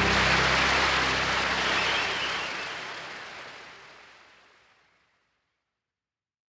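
Live audience applauding at the end of the song as the last chord dies away, the applause fading out from about two seconds in.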